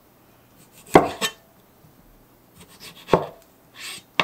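Kitchen knife slicing through a tomato and knocking on a cutting board: two sharp strokes about two seconds apart, with softer scraping of the blade near the end.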